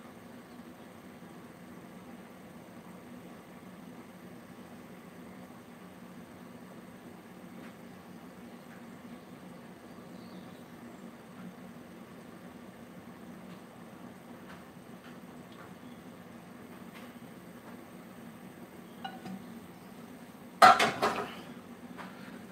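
Food being tipped out of a non-stick frying pan: a quiet, steady low hum with a few faint ticks and scrapes. Near the end comes one loud clatter of pots and pans, typical of the metal pan being set down.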